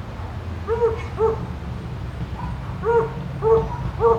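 A dog barking off and on in short barks, two pairs of quick barks about half a second apart.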